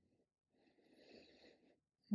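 Near silence, with a faint soft noise about halfway through.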